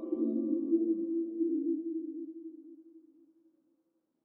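A man's voice holding one long chanted note at a steady pitch, fading away over about three seconds into silence.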